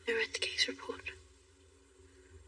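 Whispered speech for about the first second, then only a faint steady low background.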